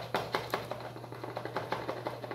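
Plastic funnel worked and tapped in the neck of a plastic soda bottle to clear a clog, making a quick, irregular run of clicks and taps that is densest at the start and thins out.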